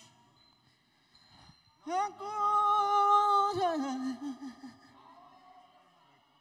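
A man's voice holding one long high sung note for about two seconds, scooping up into it and then sliding down into a few wavering lower notes before trailing off.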